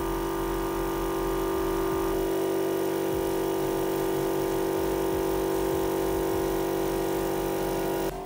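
Air compressor running steadily, a constant hum with a steady hiss over it, supplying air to a paint spray gun.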